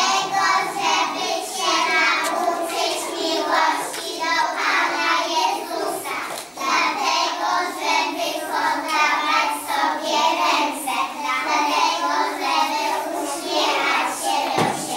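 A group of preschool children singing a song together, with a short break about halfway through.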